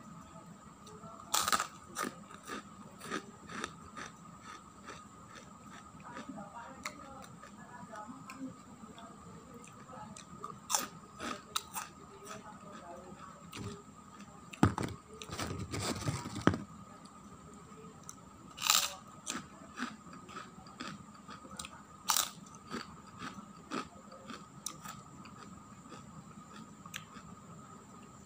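Fried kerupuk crackers being bitten and chewed close to the microphone: irregular sharp crunches every second or so, a few much louder bites, and a longer run of crunching about halfway through.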